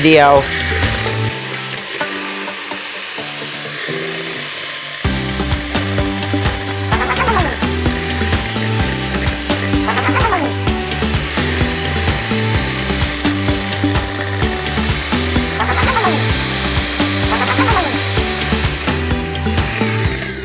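An electric hand mixer runs steadily, its beaters whirring through thick cake batter in a glass bowl. Background music with a beat plays along, coming in more strongly about five seconds in.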